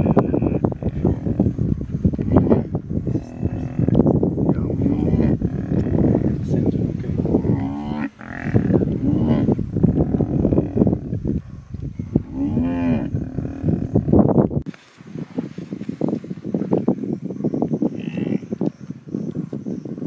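A baby hippo's low, moo-like bellowing distress calls, repeated several times as a lion bites it, over continuous rough scuffling noise from the struggle.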